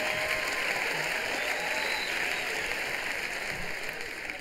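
Large audience applauding, with a little laughter in it, easing off near the end.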